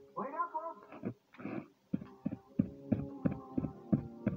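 Film or TV soundtrack playing in the room: a brief pitched cry, then music with a steady beat of about three strikes a second over held notes begins about two seconds in.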